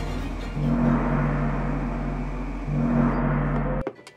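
H300 fog machine running: a loud deep electric buzz with a hiss of fog on top, growing louder twice. It stops abruptly just before the end, followed by a few clicks.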